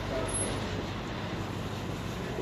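Steady outdoor street background noise, traffic-like, with a faint murmur of voices.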